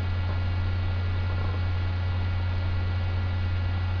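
Steady low electrical mains hum with a faint hiss and a few thin, steady higher tones, unchanging throughout.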